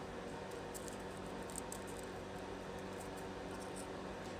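Scissors snipping through a coffee filter folded into many layers: a string of faint, short cuts over a steady low hum.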